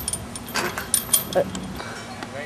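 Steel chains of a homemade disc golf basket jingling, with several metallic clinks over the first second or so as they are handled.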